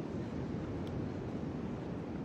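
Steady wind rumbling on the microphone, mixed with the wash of ocean surf.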